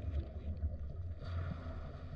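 Underwater ambience heard through a submerged camera: a steady low rumble with no distinct events.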